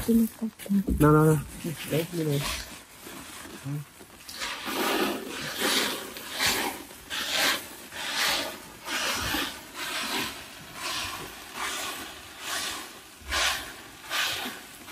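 Paddy rice being poured from an old woven plastic sack into a new one in regular surges, a little more than one a second, with the plastic sacks rustling. Brief voices come at the start.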